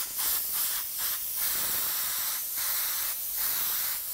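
Airbrush spraying paint heavily onto a cotton t-shirt: a steady hiss of compressed air and atomised paint.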